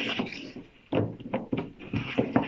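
Stiff picture card sliding against the wooden frame of a kamishibai theatre, a short papery scrape at the start, followed about a second in by a few short knocks of handling.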